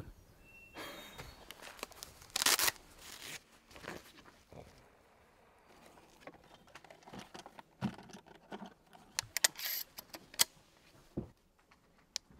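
Shotgun shells being handled in a fabric shell holder and loaded into a pump-action shotgun: a few rustling bursts, the loudest about two and a half seconds in, then several sharp clicks near the end as shells go into the gun.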